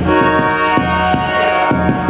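Live band music played loud: sustained chords that change every half second or so, with drum and cymbal hits.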